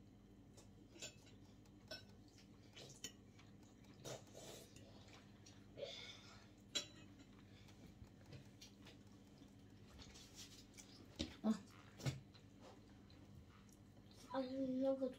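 Quiet kitchen with scattered light clinks and knocks of dishes and cutlery being handled, the loudest few near the end.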